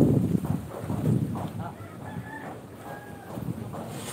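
A rooster crowing faintly in the background, over low background noise.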